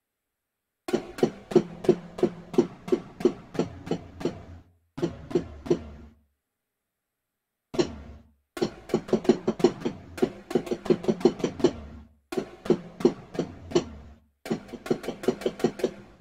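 Gated tom-tom drum fills, electronic or sampled: quick runs of pitched tom hits, about four a second, each cut off short. The runs come in six phrases of a half-second to a few seconds, separated by dead silence.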